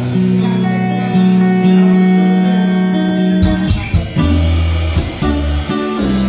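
Live band playing a slow blues-soul number with no vocals: held keyboard chords and electric guitar over bass and drum kit, with drum strokes and low bass notes coming in more strongly about three and a half seconds in.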